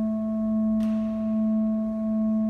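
Organ holding a single sustained note, steady and unchanging, with a soft, pure hollow tone.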